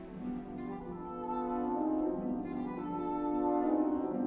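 French horn playing a slow solo melody of held notes over orchestral accompaniment.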